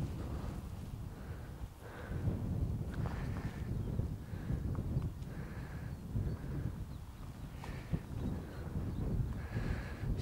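Wind buffeting the microphone as a steady low rumble, with soft footsteps on grass turf roughly once a second.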